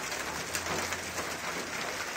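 Hail mixed with rain pelting parked cars and the street: a dense, steady patter of many small hits.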